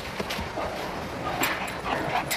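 A dog giving short excited yelps while running in a play chase with a gorilla, over a steady hiss from old video footage.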